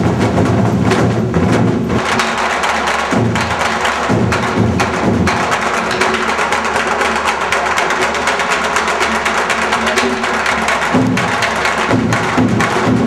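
Korean traditional drum-dance music: sticks striking stand-mounted drums in a quick, dense rhythm over other percussion. The heavy low drumming drops away after about two seconds, comes back in short spells, and returns strongly near the end.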